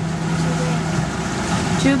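Motorboat under way: the engine gives a steady low hum under a constant rush of wind and water.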